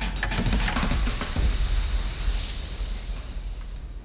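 Intro sting music with several sharp hits in the first second or so, then a rushing whoosh that swells about two and a half seconds in and fades away.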